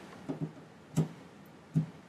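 A power plug and its cord being handled at a wall outlet: a few short, light clicks and knocks, roughly one every three quarters of a second, as the plug is fitted into the socket.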